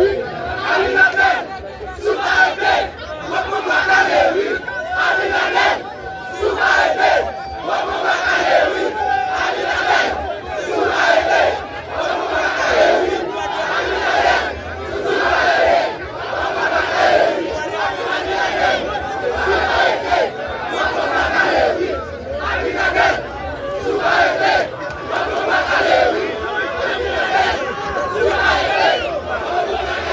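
Large crowd shouting and cheering, many voices at once, loud and without a break.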